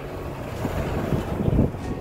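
Wind buffeting the microphone: a low, uneven rush with a stronger gust a little past the middle.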